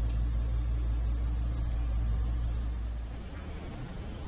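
Steady low hum of a car assembly hall, which drops off abruptly about three seconds in.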